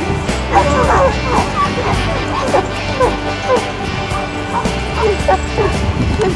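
A dog barking and yipping repeatedly, a couple of short calls a second, starting about half a second in, over background music.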